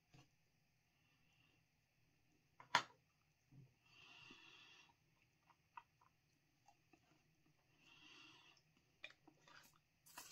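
Near silence filled with a man's quiet mouth sounds as he tastes a spoonful of hot sauce: one sharp lip smack or click about three seconds in, a few small clicks, and two soft breaths.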